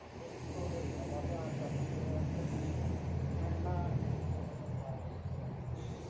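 A low rumble that builds about half a second in and fades out about four and a half seconds in, with faint murmuring voices over it.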